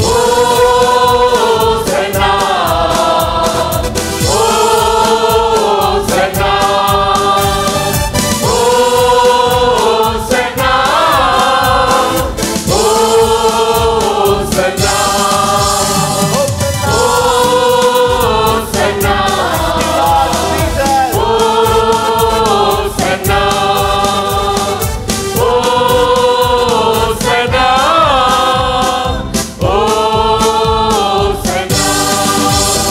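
Tamil praise-and-worship song sung live by a mixed group of men and women into microphones, with instrumental accompaniment and a steady beat. The melody goes in short repeated phrases, each ending on a held note.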